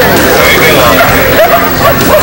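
A group of dachshunds barking and yipping over a crowd's chatter.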